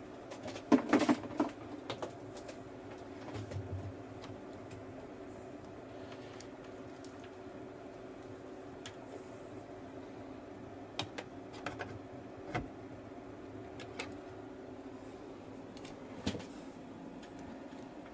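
Scattered sharp clicks and taps, a quick loud cluster about a second in and a few single ones later, over a steady low hum.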